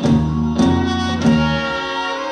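Live soul band holding a sustained chord on organ and horns, struck through by three accented band-and-drum hits a little over half a second apart.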